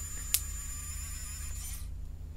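Steady low electrical hum with a faint high-pitched whine, and one sharp click about a third of a second in.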